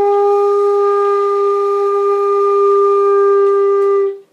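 Concert flute holding a single long G4, one steady note with no change in pitch, which stops right at the end.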